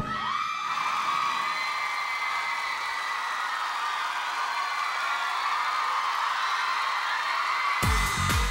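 A studio crowd cheering and whooping in high voices, a steady wash of cheers with no music under it.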